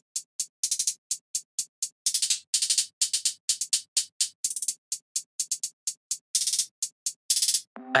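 A programmed trap closed hi-hat pattern from a drum sample plays alone at 126 BPM: short, crisp ticks in a steady run, broken several times by quick rolls and by hits pitched higher or lower. The hats are still dry, with no EQ or reverb yet.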